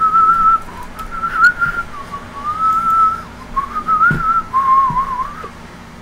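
A person whistling a wandering tune with the lips, a clear pure tone in about five short phrases separated by brief pauses.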